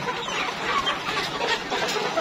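A flock of Rainbow Rooster chickens clucking all together, many overlapping calls, as the hungry birds crowd the feeder at feeding time.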